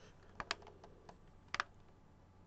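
Plastic push-buttons on an Audio Crazy radio-cassette/USB boombox clicking as they are pressed to start recording: two quick pairs of clicks about a second apart.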